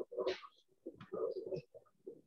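Faint, broken voice sounds in short bursts over a video call.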